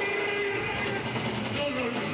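Live heavy metal concert heard from the crowd: a long held note with a slight waver breaks off about a second in, and a lower, falling tone follows near the end, over band and crowd noise.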